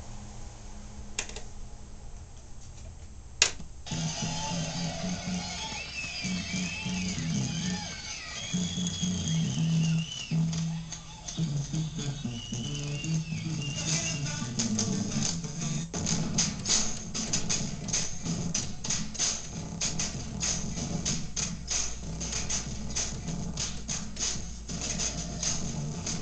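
A home-produced, sample-based beat played back: after a click it starts about three and a half seconds in with a bass line and a wavering melodic sample. About fourteen seconds in, drums join with fast, regular high hits.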